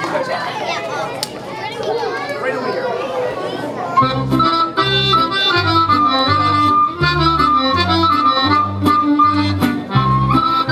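Children's chatter, then about four seconds in, accordion music for a Serbian folk circle dance (kolo) starts suddenly: a quick melody over a bass that changes about every half second.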